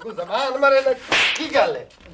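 A raised, drawn-out voice, cut by a short, sharp smack just over a second in, like a slap or whip crack.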